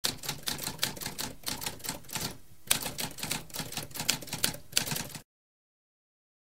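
Mechanical typewriter typing, keys struck about four times a second, with a brief pause a little before halfway; it cuts off suddenly just after five seconds in.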